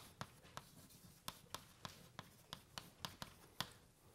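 Chalk tapping and scraping on a blackboard as words are written by hand: faint, short, sharp ticks at about three a second.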